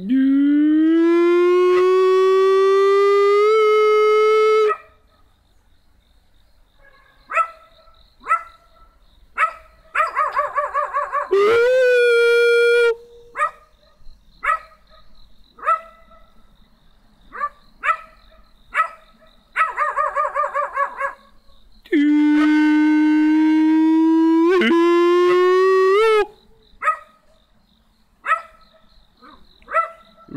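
Three long, loud howls, each held at an even, slowly rising pitch, with a dog barking between them in short single barks and quick runs of barks.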